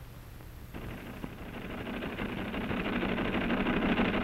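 Typewriter typing in a rapid, continuous clatter that starts suddenly just under a second in and grows steadily louder, heard over the hiss and hum of an old film soundtrack.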